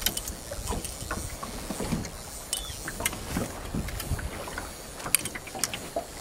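Small boat on choppy sea: water slapping against the hull with scattered short knocks, and wind on the microphone.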